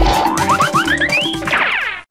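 Background children's music with a cartoon sound effect laid over it: a quick run of short rising pitch sweeps climbing step by step, then a cascade of falling tones near the end.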